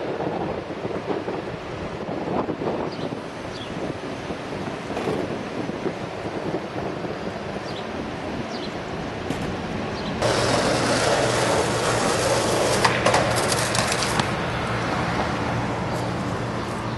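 City street ambience with a faint steady hum. About ten seconds in, the rumble of skateboard wheels rolling on the pavement starts abruptly and lasts about four seconds, with a clatter of sharp knocks near its end as the skater falls and the board hits the ground.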